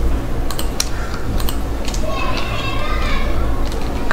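A few sharp computer keyboard and mouse clicks in the first second and a half, over a steady low electrical hum.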